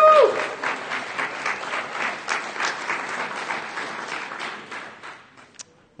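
Audience applauding, with a single high whoop as it begins; the clapping dies away after about five seconds.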